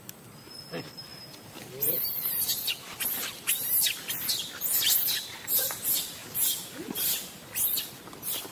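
Footsteps crunching through dry leaf litter, about two steps a second, starting about two seconds in. Before them there is a faint thin high call.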